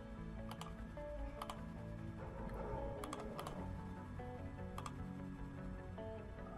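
A few separate clicks of computer keys, some in quick pairs, as a web address is typed in, over soft background music with held tones.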